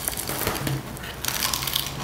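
Sandpaper rustling and crackling as it is folded around an orbital sander's pad and pulled taut under the pad's clamps, with small handling clicks.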